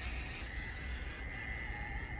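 Traxxas TRX4M micro crawler's small brushed electric motor and drivetrain giving a thin, steady high whine as it crawls at low speed, over a low rumble.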